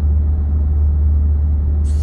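Car cabin noise while driving: a steady, strong low rumble of road and engine heard from inside the car.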